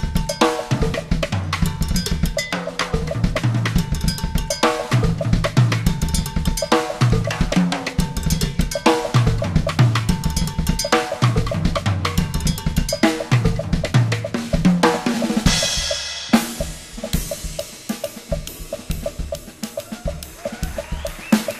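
Acoustic drum kit played solo: dense, fast fills across toms, snare and bass drum with cowbell accents. About three-quarters of the way through, a cymbal wash swells and cuts off sharply, and the playing turns quieter and lighter, with evenly spaced hits.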